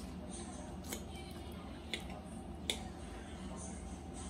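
A metal fork cutting through food and clicking against a plate, giving a few short, light clicks about a second apart over faint room hum.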